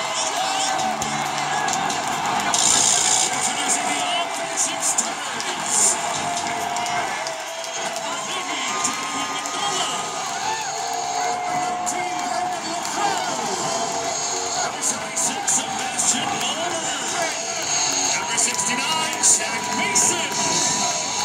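Large stadium crowd cheering, yelling and whooping without a break.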